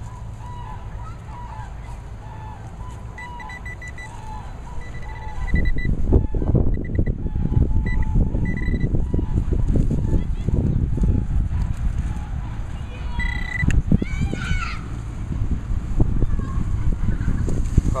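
Metal-detecting pinpointer giving short runs of high beeps while the hole is re-checked for another target. From about five seconds in, loud low rumbling and knocking from digging and handling in the soil.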